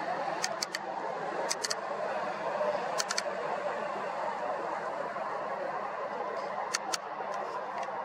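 Steady hum of distant traffic with a few faint, sharp clicks in small clusters, near the start, about three seconds in and near the end.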